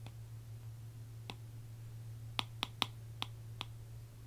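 Small sharp clicks of something handled close to the microphone: one about a second in, then five in quick succession in the second half. A steady low hum lies under them.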